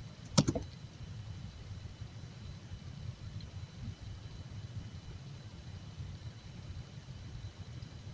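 A single mouse click about half a second in, then a low, steady background hum with no other events.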